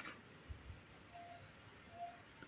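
Near silence: faint room tone with a light click at the start, a couple of soft low knocks about half a second in, and two brief faint tones later on.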